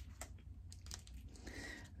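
Quiet room tone with a steady low hum and a couple of faint clicks near the start, likely from handling the compacts.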